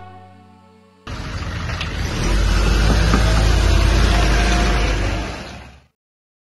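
A motor vehicle engine revving hard: it cuts in suddenly about a second in, swells, holds, then fades out near the end. Before it, a sustained musical chord dies away.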